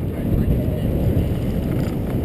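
Wind and road noise on a bicycle-mounted action camera while cycling: a steady low rumble of air buffeting the microphone and tyres rolling on asphalt.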